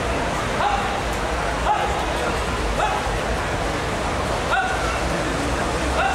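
Four short, high yelping calls about a second apart over steady crowd hubbub.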